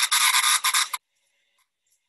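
Male periodical cicada's alarm call: a loud buzz from its vibrating tymbals, given by an unhappy insect being handled. The buzz has a short break and cuts off suddenly about halfway through.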